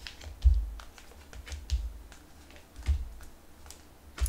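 Tarot cards being laid down on a table one after another: three soft thumps a little over a second apart, with light clicks and taps between.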